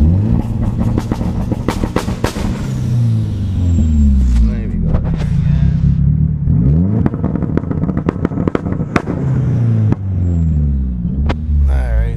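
Turbocharged Nissan 240SX KA24DE-T four-cylinder engine revved up and down several times against its launch-control rev limit, with sharp exhaust pops and cracks among the revs.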